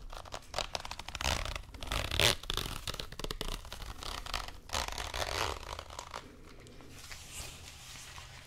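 Fingers scratching, squeezing and rubbing a small sponge-like pad close to the microphone: an irregular run of short rasping, scratchy strokes that grows quieter near the end.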